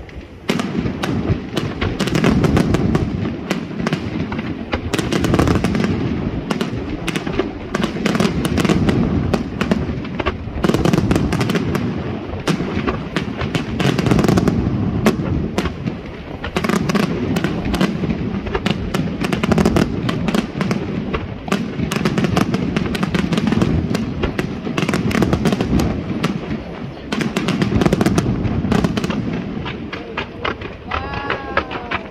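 Fireworks display: aerial shells bursting in a continuous barrage, many bangs in quick succession over a steady low rumble.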